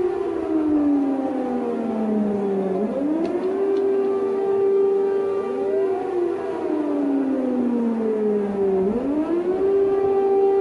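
Civil-defence air-raid sirens sounding a warning: a steady tone that slowly falls in pitch, sweeps back up about three seconds in, holds, and falls again before rising once more near the end, with other sirens at higher pitches overlapping.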